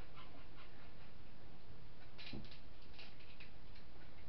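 A pet dog making faint sounds in the room, with a few short clicks and rustles about halfway through.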